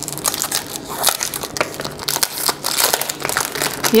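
Clear cellophane shrink-wrap being torn and peeled off a cardboard cosmetics box by hand: a dense, irregular crinkling and crackling.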